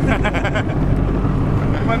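A man laughing in short quick bursts, over the steady low rumble of a speedboat running on the water.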